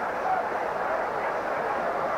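Stadium crowd at a football match, a steady dense murmur of many voices heard over an old television broadcast.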